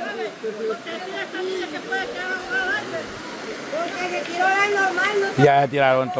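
Several people's voices chattering over one another, with one louder, held voice near the end.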